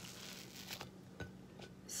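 Faint rustling and a few soft taps as a flour tortilla is handled and lifted off a plate by hand, over a low steady hum.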